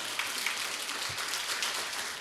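Audience applauding, many hands clapping at a steady level.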